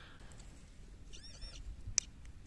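Faint, steady rush of water flowing through a small dam, with a brief high, squeaky chirping call of three or so quick rising-and-falling notes a little past halfway, and a sharp click at the end.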